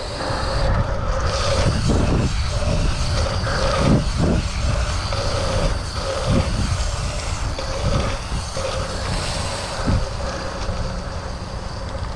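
Wind buffeting the microphone over the rumble of BMX tyres rolling fast on the track surface, with a few brief knocks from the bike going over bumps.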